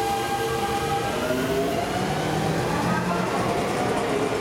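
Seibu 6000-series electric train pulling into a station platform over the points, rumbling steadily, with whining tones from its drive that shift in pitch as it slows.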